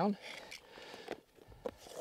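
The tail of a spoken word, then faint rustling and two light clicks as a compass and field notebook are handled.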